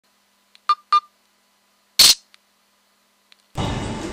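Digital camera sounds: two quick beeps, then a single shutter click about a second later. Steady background noise comes in near the end.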